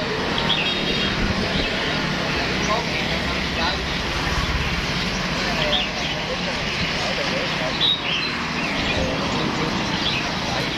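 Street ambience at a roadside bird stall: people talking in the background over steady traffic noise, with small caged birds chirping now and then.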